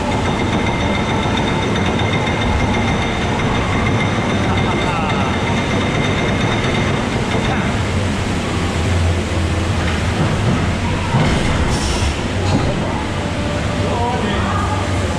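Steady, loud rumble and rush of a bathtub-shaped water-ride boat running through an enclosed dark tunnel, with a thin high steady tone over it that stops about halfway through.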